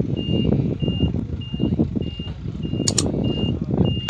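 Livestock truck's reversing alarm beeping at one steady high pitch, about every 0.6 s, over the low rumble of the truck's engine. A few sharp clicks come about three seconds in.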